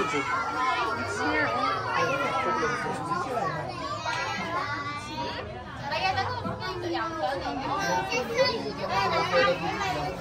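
Overlapping chatter of many voices, children among them, with no single speaker standing out.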